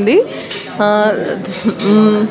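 A woman talking in short phrases, with tableware clinking behind her.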